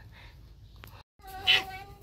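A short, high-pitched vocal cry about a second and a half in, coming after a soft click and a moment of dead silence.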